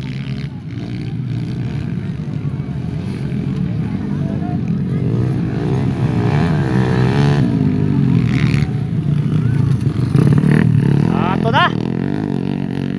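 Several racing motorcycles running hard around a dirt circuit, engines revving up and down and overlapping as they pass. The sound builds louder in the second half as bikes come by close.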